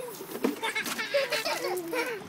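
Young children's voices, chattering and calling out while playing.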